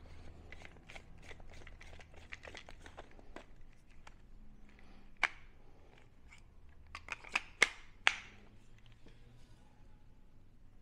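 Coarse kosher salt poured from a small glass bowl into a grinder's chamber, a faint patter of grains for the first few seconds, followed by several separate sharp clicks, the loudest between seven and eight seconds in.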